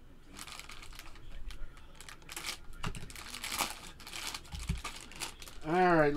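Foil trading-card pack wrappers crinkling and tearing as packs are ripped open by hand, in a string of short, irregular bursts.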